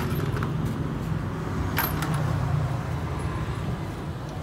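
Motorcycle engine idling steadily, with a single sharp click about two seconds in.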